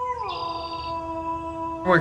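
A wordless singing voice holds a long, steady note, then slides down to a lower note about a quarter second in and holds it.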